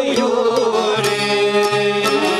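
Live Albanian folk instrumental music: long-necked lutes, violin and accordion playing a melody over a steady frame-drum beat.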